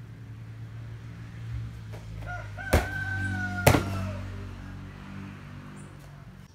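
A rooster crowing in one long call of about two seconds that falls slightly at the end. Two sharp thumps about a second apart, the loudest sounds, come as bare feet strike the tiles and gym mat during a backflip-type gainer. A steady low hum lies underneath.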